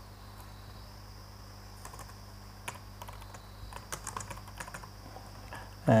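Computer keyboard typing: scattered keystrokes, thickest in the middle, over a steady low hum.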